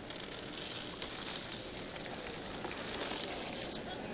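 Cardboard pieces of a 2000-piece jigsaw puzzle pouring out of the box onto a tabletop: a steady rustling patter of many small pieces landing and sliding over one another.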